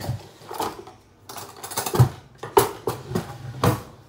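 Kitchen utensils being handled: a quick, irregular run of knocks and clatters, the loudest about two seconds in.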